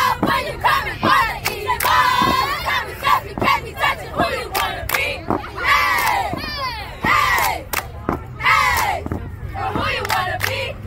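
A middle-school cheerleading squad shouting a cheer in unison, their voices broken up by frequent sharp hand claps.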